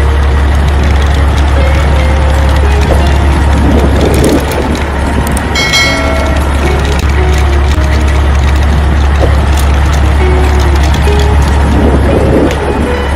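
Steady, loud running of a heavy truck engine, with a deep constant hum under a rough noise, laid over toy dump truck footage. A short bright chime sounds about six seconds in, as a subscribe button appears on screen.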